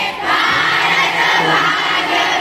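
A crowd of schoolgirls chanting slogans together, many young voices at once.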